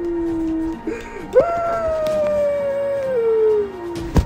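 A person's voice wailing in two long, drawn-out cries. The second is louder and slides slowly downward in pitch before breaking off.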